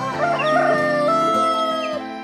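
Rooster crowing a single long cock-a-doodle-doo: it wavers at first, then steps up in pitch and holds, stopping near the end. Background music plays underneath.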